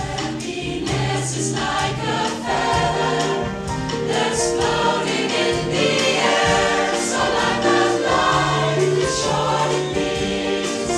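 Mixed choir of women's and men's voices singing in harmony, with sustained chords and a low bass part underneath.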